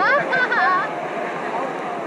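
Steady rush of river water around the drifting raft, with a high voice calling out in rising and falling tones during the first second.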